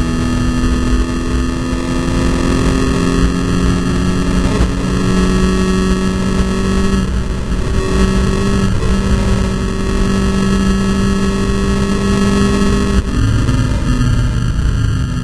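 Volkswagen Scirocco Cup race car's engine heard from inside the cabin at speed, holding steady revs under a heavy layer of road and wind noise, on poor-quality sound. The engine note breaks briefly about halfway, and its pitch drops suddenly about a second before the end.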